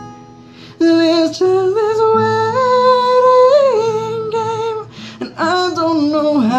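A man singing to his own acoustic guitar. After a quiet moment of guitar, his voice comes in about a second in with a long held note that steps upward and wavers, breaks off briefly, and starts again near the end over the steady guitar chords.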